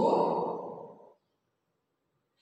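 A woman's voice giving one drawn-out, breathy, sigh-like exhale that fades out about a second in.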